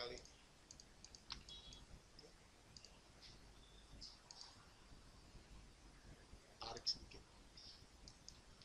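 Faint computer mouse clicks, scattered and irregular, against near silence.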